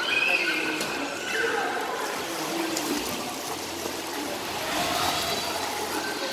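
Children's high-pitched voices calling out over the splashing of swimmers in a pool, with the loudest calls near the start and again about five seconds in.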